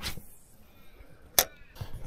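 A light spinning rod whooshes briefly through a cast. About a second and a half later comes a single sharp click, the spinning reel's bail snapping shut.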